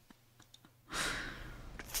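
A woman's sigh, a single breathy exhale into a close microphone. It starts about a second in and fades away over about a second.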